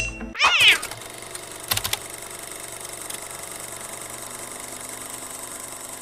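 A cat meow sound effect about half a second in, rising and falling in pitch, then a short thud just before two seconds. After it comes a steady hiss.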